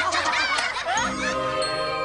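Boombox switched on and starting to play tinkling, chime-like music about a second in, held tones that build into a tune.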